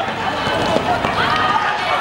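Shouting voices of players and spectators during a fast attack in a small-sided football match on a hard court, several calls overlapping, with a sharp knock about three quarters of a second in.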